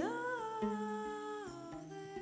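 A woman's voice singing a long held note that slides up at the start and drops away about one and a half seconds in, with a violin sustaining a low note beneath it.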